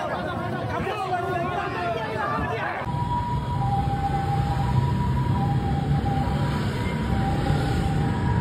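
Crowd of people shouting and talking over one another for about three seconds, then an abrupt change to a busy street: a steady low rumble of traffic and crowd, with a siren sounding faintly in two pitches that come and go.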